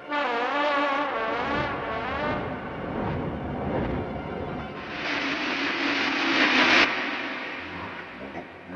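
Cartoon soundtrack: a trombone blares at the start with a wobbling, wavering pitch for about two seconds. From about five seconds in, a loud hissing, crash-like rush of noise builds and cuts off suddenly just before seven seconds.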